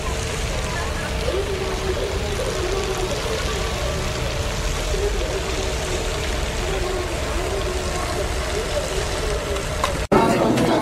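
Steady wind rumbling on the camcorder's microphone, with faint voices of people in the distance.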